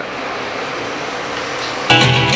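Steady hiss of FM radio static. Near the end, music with guitar cuts in suddenly as a station comes on.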